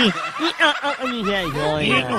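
Laughter: people snickering in short, repeated bursts, mixed with a little talk.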